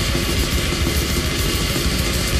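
Deathgrind band recording playing at full tilt: heavily distorted guitars and bass over fast, densely packed drums, a loud unbroken wall of sound.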